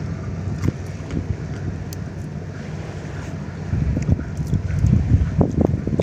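Wind buffeting the microphone over a steady low drone from a passing cargo ship. The wind gusts grow stronger about four seconds in.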